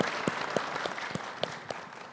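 Audience applause, a scatter of separate hand claps that dies away.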